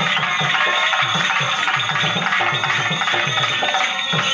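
Live stage-drama dance music: a melody on a keyboard instrument over a fast, steady hand-drum rhythm, playing continuously.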